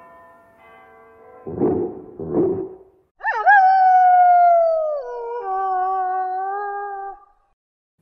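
Cartoon dog barking twice, then giving one long howl that slowly falls in pitch, steps down about two-thirds of the way through, and stops short, over soft music.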